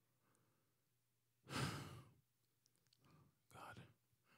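A man breathing heavily into a handheld microphone: one breathy spoken word about one and a half seconds in, then two short exhales near the end, with near silence between them.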